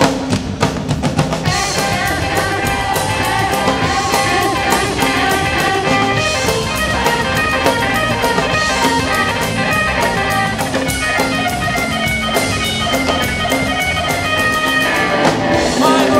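Live rock'n'roll band playing a section with no words: an electric guitar plays a busy lead line over a drum kit and electric bass.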